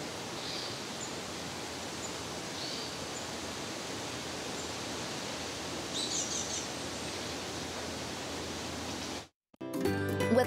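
Outdoor woodland ambience: a steady rushing noise with a few short bird chirps, about half a second in, near three seconds and around six seconds. It cuts off suddenly shortly before the end.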